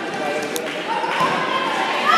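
People talking in the background of a gym hall, with a single sharp knock about half a second in.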